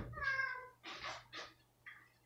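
A domestic cat meows once, a single call of a little over half a second that falls slightly in pitch. Two brief, softer noises follow.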